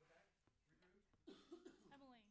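A person coughing, a short burst of about three quick coughs just past the middle of an otherwise near-silent stretch.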